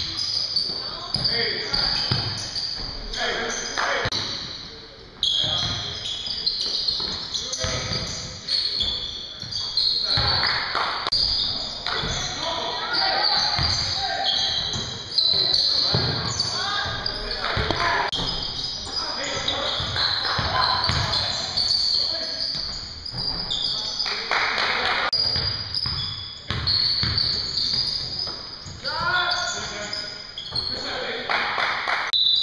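Basketball game on a hardwood gym court: the ball bouncing repeatedly, with indistinct players' voices echoing in the large hall.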